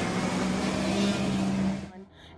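Armored police truck driving, its engine a steady drone over road noise, cutting off abruptly near the end.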